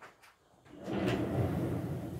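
Handling noise as stones are moved around the grid table: a couple of light clicks, then a longer rustling scrape from about a second in, the loudest part.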